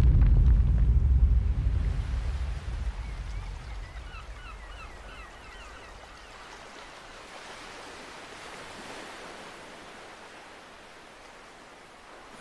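A deep rumble dies away over the first few seconds, leaving soft surf washing on a sandy beach. A quick run of small, high bird chirps comes about four to five seconds in.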